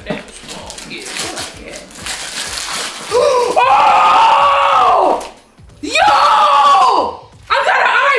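Gift wrapping paper tearing and rustling for about three seconds, then three loud, long excited screams, the first about three seconds in.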